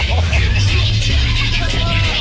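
Tagada funfair ride in motion: loud ride music with heavy bass, with riders' shouts and rushing noise over it.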